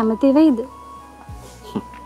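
Soft background music holding one long, steady high note, with a short spoken line over it near the start.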